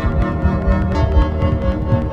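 Experimental electronic music played on synthesizers driven by biosonic MIDI readings of an unborn baby's movements in the womb: many held synth notes layered over a busy, fluctuating low bass.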